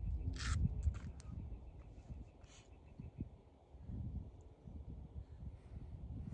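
Wind rumbling on the microphone, with a few short harsh sounds about half a second in, near one second and again about two and a half seconds in.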